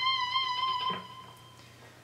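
Electric guitar playing a single high note on the high E string, held with a slight waver, that dies away about a second in.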